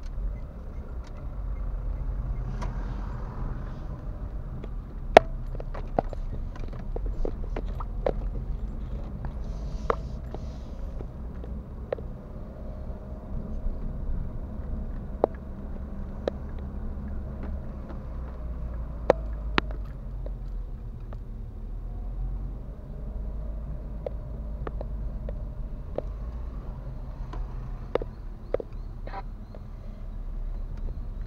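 A car's engine and road noise heard from inside the cabin as a steady low rumble while driving slowly. Scattered sharp clicks and knocks come through, the loudest about five seconds in and again near the twentieth second.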